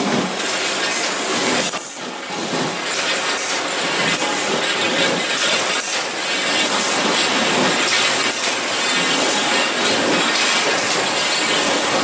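Steel tube production line running: a loud, steady machinery din with a strong hiss, dipping briefly about two seconds in.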